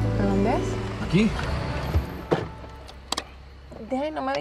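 Soft music fades out in the first second while a car pulls up and brakes to a sudden stop, with short startled exclamations and two sharp knocks inside the car.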